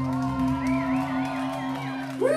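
Live rock band holding a chord: a steady low drone from the bass and guitars, with a wavering high tone above it from about half a second in.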